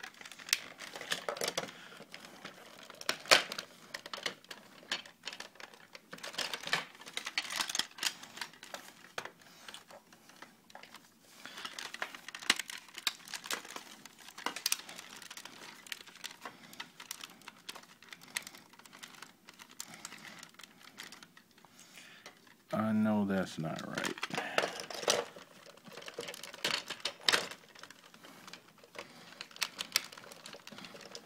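Irregular plastic clicks and knocks as the parts and joints of a large Masterpiece Ultimate Bumblebee Transformers figure are handled and moved during transformation. About 23 seconds in there is a brief murmur from a man's voice.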